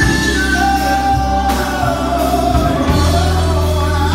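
A gospel song sung live into a microphone over loud accompaniment with heavy bass. The voice holds long notes and slides between them.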